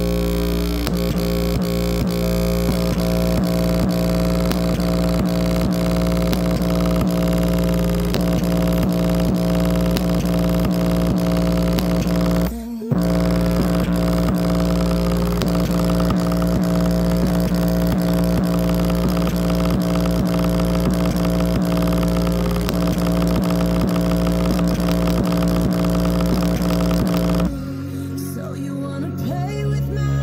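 JBL Flip 4 Bluetooth speaker playing a bass-heavy track at full volume as a steady, loud low drone, its passive radiator flexing to extreme excursion, driven close to its limit. The sound cuts out briefly about halfway through and stops shortly before the end.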